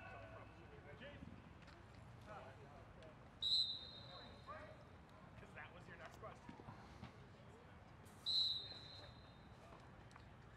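Two shrill whistle blasts about five seconds apart, each starting sharply and tailing off, the second trailing longer: a referee's whistle stopping play. Faint voices and shouts carry from the field underneath.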